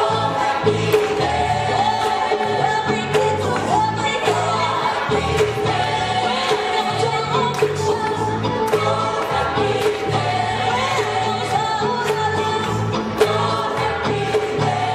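Gospel choir singing with band accompaniment: a walking bass line and steady percussion hits under the voices.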